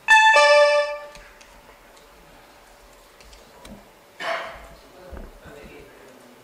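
Electronic voting system's signal chime: a loud two-note electronic tone, about a second long, marking the opening of a vote. About four seconds in there is a short noisy burst.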